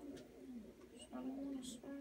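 A person's faint voice making low, drawn-out hum-like sounds, one held steady through the second half.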